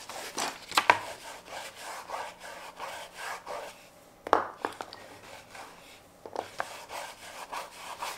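White oil pastel stick rubbed and scratched across sketchbook paper in irregular strokes, with a couple of sharper taps, about a second in and just past the middle.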